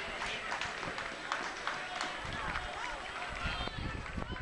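Voices calling and shouting across an outdoor football pitch, over players running and a few sharp knocks of the ball being kicked.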